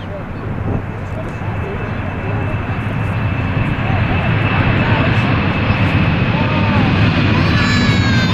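Boeing 747-400ER's four GE CF6 turbofans running at high power as the jet rolls down the runway toward and past the microphone. The engine noise grows steadily louder under a steady fan whine. Near the end a set of higher fan tones appears and drops in pitch as the aircraft goes by.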